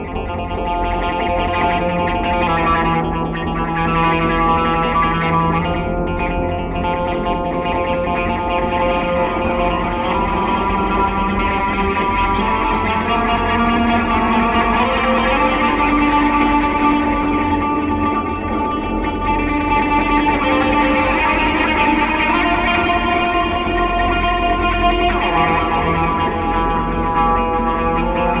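Electric guitar and MIDI guitar improvising together through effects, with echo: layered, long-held notes over a steady low drone, the held notes changing every few seconds.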